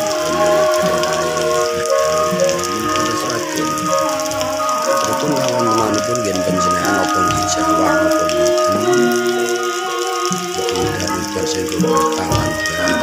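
Steady rain falling on banana leaves and garden foliage, with music of long held tones playing over it.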